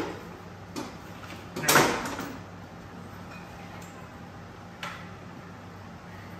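Workshop handling noise from an engine and transaxle assembly hanging on a shop crane over wooden blocks. There is one loud short scraping knock about two seconds in and a couple of lighter clicks, over a steady low hum.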